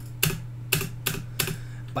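A few sharp, irregular clicks of computer keyboard keys being pressed, over a steady low electrical hum.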